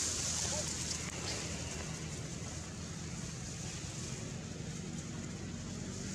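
Steady outdoor background noise: a low hum under a high hiss, with no distinct sound standing out.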